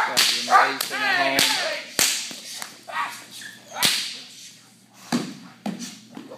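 A protection agitator's whip cracking sharply about half a dozen times, the loudest crack nearly four seconds in. A German Shepherd on a leash barks in short bursts in the first second or so as she lunges at the helper.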